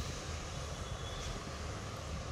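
Steady, low background noise: an even hiss with a faint low hum and no distinct events.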